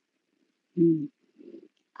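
Near silence, then about a second in a short low voiced sound from a person, like a hum or murmur, followed by a fainter one.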